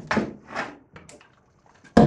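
Knocks and scuffs of a biscuit joiner being fetched and handled: a few short scuffs and small clicks, then a sharp knock near the end.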